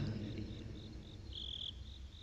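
Crickets chirping faintly: short high-pitched chirps at about four a second, with one longer chirp past the middle, over a low steady hum.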